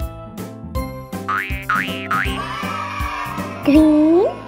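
Upbeat children's background music with a steady beat, over which a cartoon 'boing' spring sound effect rises three times in quick succession about a second in. Near the end comes a short, loud, rising-pitched exclamation.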